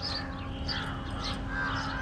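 Birds calling in the open air: crows cawing amid repeated short, high, falling chirps from other birds.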